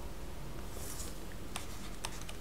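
Faint, brief scratching of a stylus writing on a tablet, with a light tick near the end, over a steady low hum of room noise.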